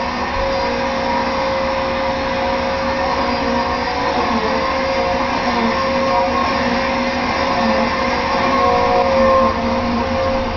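Vacuum cleaner running steadily, its motor whine holding one pitch over a constant rush of air.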